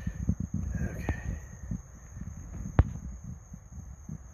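Handling noise and small clicks from a screwdriver turning a screw on an outboard's carburettor linkage, with one sharp click about three seconds in.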